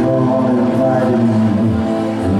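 Yamaha Motif XF8 keyboard played live, held chords.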